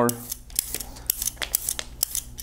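Twelve-blade metal julienne peeler scraping down a raw carrot in quick repeated strokes, each stroke a short, crisp scrape as the blades cut the carrot into thin strips.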